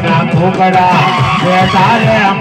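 Devotional folk singing with instrumental backing, amplified over a loudspeaker; the voice wavers and glides up and down in pitch.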